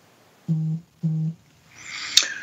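A man's voice making two short, flat-pitched hesitation sounds ("euh"), each about a third of a second long, about half a second apart.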